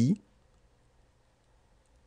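A man's voice finishes a short spoken French phrase about a quarter second in, followed by a pause of near silence with only faint room tone.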